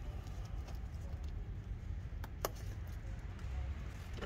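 Faint clicks and light handling noises as a small retaining spring is hooked onto a fibreglass turbo heat blanket, with two sharp clicks a little over two seconds in, over a steady low hum.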